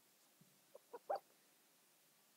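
Near silence: room tone, with three faint, short pitched sounds about a second in.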